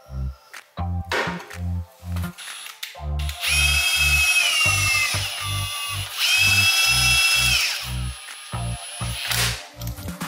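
Cordless impact wrench spinning lug nuts onto a wheel in two runs of about a second and a half each, the first about three seconds in and dropping in pitch near its end, the second about six seconds in.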